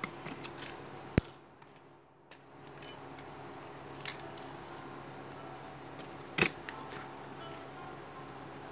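Handling noise from a sandal's sole and crocheted upper being moved about on a tiled floor: scattered short clicks and taps, the sharpest about a second in and again about six and a half seconds in, over a faint steady hum.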